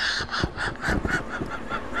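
A woman laughing in a rapid, high-pitched run of about five pulses a second, with applause underneath.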